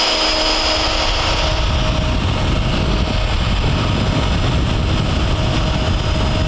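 Festool 2200 plunge router running steadily with a high whine while plowing a groove into the polyurethane foam core along the edge of a fiberglass door.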